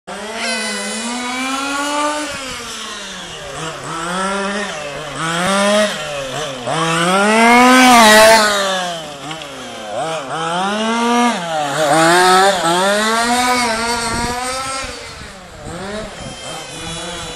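1:5 scale RC car with a small two-stroke petrol engine, revving up and down every second or two as it laps. It is loudest about halfway through, as the car passes close by.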